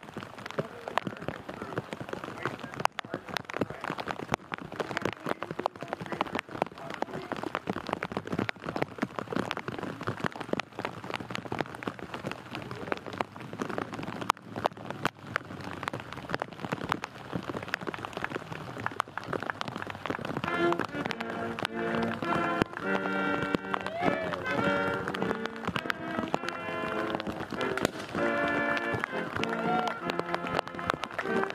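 Rain pattering on surfaces with a dense crackle of drops. About two-thirds of the way in, music begins over the rain: held chords of several tones that change about once a second.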